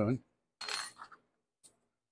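Small metal measuring spoons clinking briefly about half a second in, with a fainter clink shortly after.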